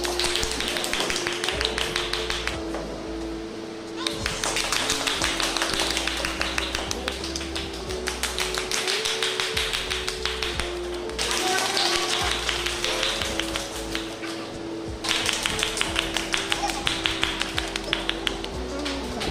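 A group of people clapping, a quick, fairly even patter of claps, over music with a slow held melody. The clapping stops and starts again several times.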